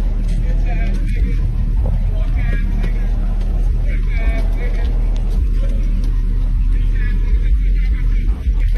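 City street noise: a steady low rumble, like traffic or an idling vehicle, with voices calling out over it now and then.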